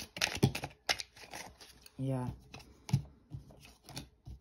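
A deck of playing cards being shuffled and handled over a table: a quick run of sharp card snaps and flicks in the first second, then a few more clicks near the end as cards are laid down.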